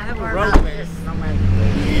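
People talking over the steady low hum of road traffic, with a single sharp click about half a second in.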